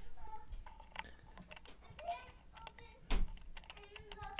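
Small clicks and clatter of metal lock-picking tools being handled while one pick is swapped for a thinner hook and slid into the lock's keyway, with one louder knock a little after three seconds.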